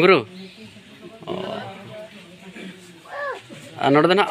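Voices speaking in short phrases with pauses between them: a loud falling utterance at the start, quieter bits in the middle, and loud talk resuming near the end.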